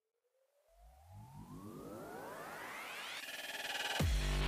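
Synthesized riser sound effect: a pitched sweep climbs steadily and grows louder from about a second in, building up to the start of electronic music.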